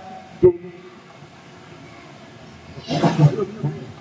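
Podium microphone in a pause: a sharp click about half a second in, then low room noise, and a short muffled rustle or breath on the microphone about three seconds in.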